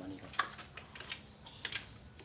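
A few sharp, irregular clicks and clinks of small hard objects, the two loudest about half a second and a second and a half in.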